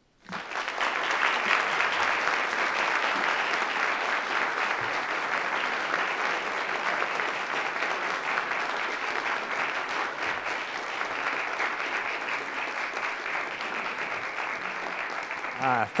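Audience applause: a roomful of people clapping steadily, starting right after the start and easing off slightly toward the end.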